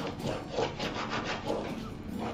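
Repeated short rubbing strokes of a white smoothing tool pressed over scrapbook paper freshly glued onto an MDF board, burnishing the paper flat so it bonds evenly without bubbles.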